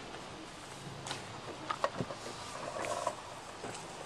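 Scattered metal clicks and knocks as a lever tool is fitted onto a seized engine's crank pulley, with a faint steady hum underneath and a short buzzy tone about three seconds in.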